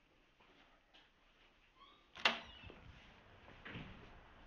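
Faint background noise with one sharp, loud click a little over two seconds in, and a softer, smeared noise near the end.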